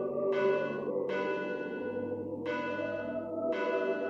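Bells ringing, struck four times at uneven intervals of about a second, each strike ringing on over a steady low sustained tone.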